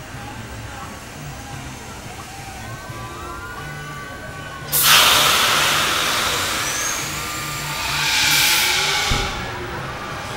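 Supreme Scream drop tower's pneumatic system releasing a loud rush of compressed air, starting suddenly about halfway through, swelling again and then dying away near the end. Faint park background noise before it.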